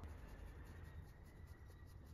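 Faint, quick scratching of fingers rubbing a small dog's chin fur, over near-silent room tone with a low hum.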